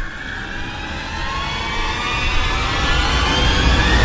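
Car engine revving hard, its pitch rising steadily and growing louder as it gains speed.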